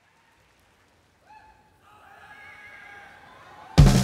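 Faint audience cheering with a high whoop, growing a little, then near the end a three-piece rock band of drums, electric guitar and bass comes in loudly all at once.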